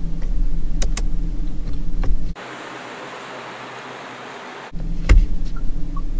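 Sharp clicks from a car's lighting-control stalk being worked: two close together about a second in, one near two seconds and one near five, over a steady low hum. In the middle the hum drops out for about two seconds and an even hiss takes its place.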